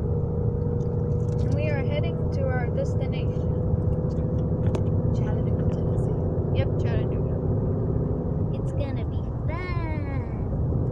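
Cabin noise of a moving Ford Mustang: a steady low engine and road rumble with a steady hum. Brief voice sounds come through it a couple of seconds in and again near the end.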